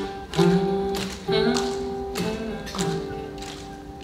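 Solo acoustic guitar played live: strummed chords about a second apart, each left to ring and fade, growing softer toward the end.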